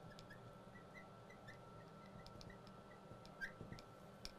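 Faint squeaking of a marker writing on a glass lightboard: a run of short high chirps with small ticks of the tip on the glass, a little louder about three and a half seconds in, over a faint steady room hum.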